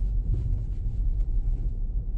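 Low, steady in-cabin rumble of a BMW M340i xDrive rolling over a speed bump, with only faint ticks and no clear knocks or bangs from the suspension.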